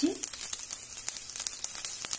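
Mustard seeds crackling and freshly added green chillies sizzling in hot oil in a kadhai: a rapid, irregular run of small pops.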